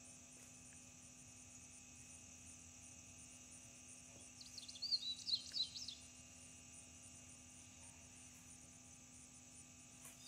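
Quiet steady hum, with a short flurry of high, quick chirps in the middle lasting about a second and a half.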